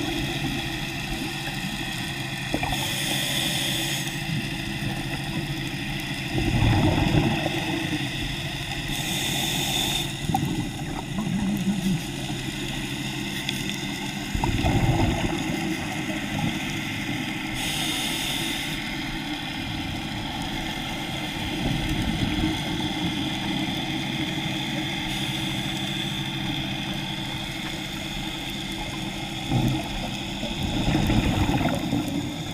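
Scuba diver breathing through a regulator underwater: a short hiss on each inhale and a bubbling rumble on each exhale, a breath every seven or eight seconds. A steady hum runs beneath.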